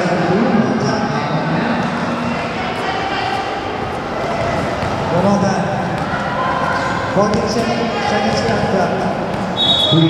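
Basketballs bouncing on an indoor court amid many voices chattering and calling, echoing in a large hall. A short high whistle blast sounds near the end.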